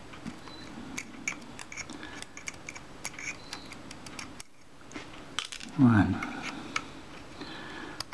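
Small screwdriver ticking and scraping on the little screws of a camera's mirror box as they are worked loose, a scatter of light, irregular clicks. A short vocal sound comes about six seconds in.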